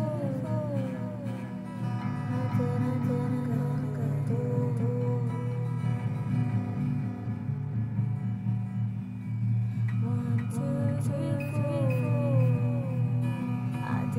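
Acoustic guitar strummed in steady chords, with a voice singing a wordless melody over it that drops away in the middle and comes back.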